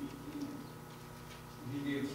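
A faint, low voice away from the microphone: a short low sound at the start, then a person beginning to read a Bible passage aloud near the end.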